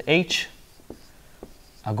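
Marker pen drawing on a whiteboard, a faint scratching with a couple of light ticks, as a line is drawn.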